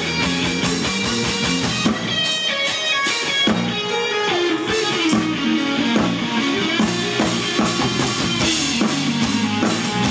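Live electric blues band playing: an electric guitar plays quick lead lines over electric bass and drums, with fast runs of notes about two to three seconds in.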